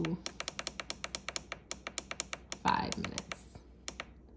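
Control-panel beeps of a Ninja Foodi multi-cooker: a rapid run of short beeps, about seven a second, as the timer button is held to step the cooking time down. A brief breathy noise comes about two-thirds of the way in.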